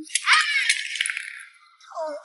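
A metal tin of hard candies rattling and clattering as it is dropped onto stone stairs: several sharp clicks in the first second, fading out by about a second and a half in.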